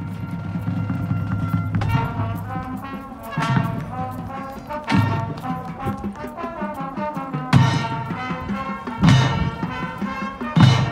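Marching band of brass and percussion playing: a held low chord for about two seconds, then a busy, fast-moving passage broken by four loud accented full-band hits.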